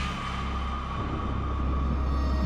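Eerie film-score drone: a deep steady rumble with a thin held high tone above it.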